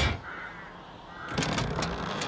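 A cartoon sound effect of a metal door knocker striking a wooden door once. About a second and a half in, the heavy door creaks open in a rapid, grating creak.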